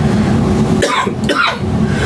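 A man coughing: two rough coughs about a second in, over a steady low hum.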